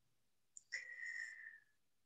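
A faint, high whistling tone lasting about a second, dipping slightly in pitch as it fades.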